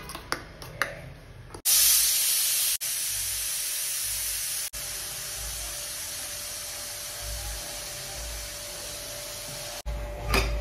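A few light clinks of a steel spoon in a steel bowl. Then, about two seconds in, a loud steady hiss of steam venting from a pressure cooker as its weight is held up to release the pressure. The hiss is strongest at first and steps down in level twice.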